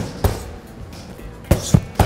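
Boxing gloves smacking into focus mitts: one punch lands about a quarter second in, then two quick punches near the end, over soft background music.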